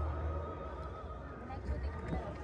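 A fireworks display going off in the distance: a low rumble with a few faint pops, under distant voices.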